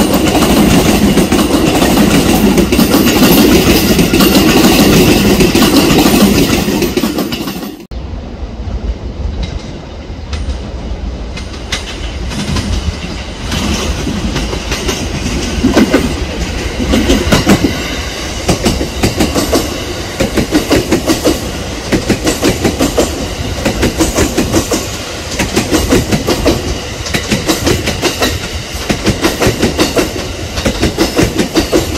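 Electric commuter train passing close by, a loud rumble and wheel clatter that cuts off suddenly about eight seconds in. Then a JR West 683 series electric limited express arriving, its wheels clicking over the rail joints in a steady rhythm of one or two clicks a second over a softer rumble.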